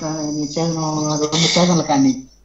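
A person's voice, loud and drawn out with little break, with a thin steady high whine running along with it.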